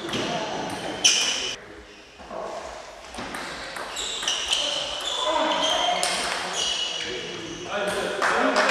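Table tennis ball clicking off bats and table in rallies, echoing in a large sports hall, with voices around.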